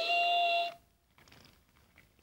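A steady, even-pitched engine-whistle toot that stops sharply about three-quarters of a second in, followed by faint rustling.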